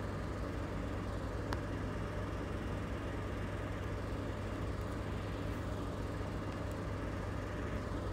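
Steady low background hum with an even noise haze, like distant traffic ambience, and one faint click about one and a half seconds in.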